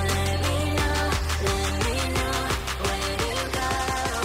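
Background electronic music with a steady beat and a sustained bass.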